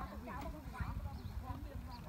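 Faint, indistinct voices of people talking, over a low steady rumble.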